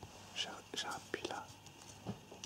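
Soft whispering close to the microphone, in several short breathy bursts.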